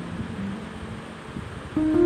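Instrumental background music. Its notes die away into a lull, and a new phrase of held notes comes in near the end.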